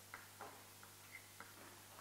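Chalk clicking and tapping lightly on a chalkboard as a word is written: about five faint, short ticks over two seconds, over a faint steady hum.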